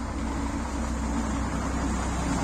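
Karosa ŠL 11 bus's six-cylinder diesel engine running at low speed close by, a steady low hum that grows slightly louder.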